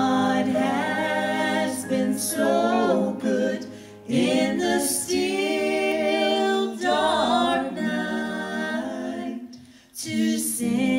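A vocal trio of two women and a man singing a church song in harmony through microphones, holding long notes, with short breaks between phrases about four seconds in and near the end.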